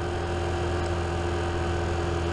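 Vespa GTS 125 scooter's single-cylinder four-stroke engine running at a steady cruising speed, with an even, unchanging engine note.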